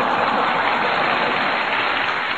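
A loud, steady rushing noise with no pitch or rhythm.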